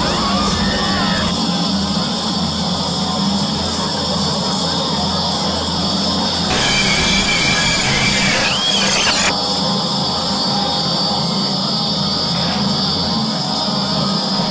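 A dense jumble of overlapping soundtracks with music among them. A harsher, noisier stretch with short gliding squeals runs from about six and a half to nine seconds in.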